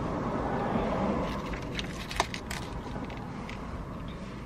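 Drinking from a bottle of orange juice, with small handling sounds and a few sharp clicks, the clearest a little past halfway.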